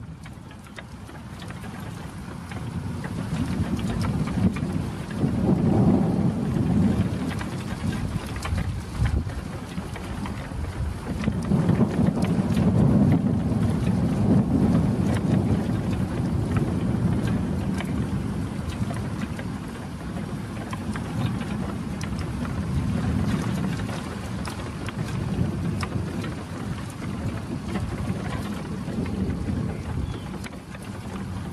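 Steady rain with thunder rumbling low and heavy, swelling about five seconds in and again around twelve seconds in; the sound fades in over the first few seconds.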